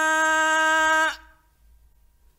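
A male Quran reciter's voice holding the drawn-out final vowel of 'yashā'' on one steady note at the close of a verse. It stops abruptly about a second in, leaving near silence with a faint low hum.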